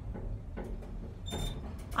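Otis Gen2 elevator car travelling between floors: a low steady rumble with a few faint creaks and knocks from the car, and a brief high tone about one and a half seconds in. The creaking and shaking are the sign of a poorly done installation.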